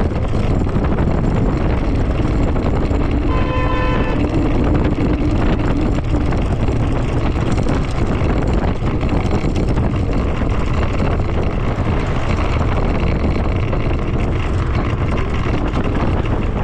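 Wind buffeting the microphone while riding an electric scooter at speed through street traffic, a steady low rumble throughout. About three seconds in, a short high beep sounds briefly.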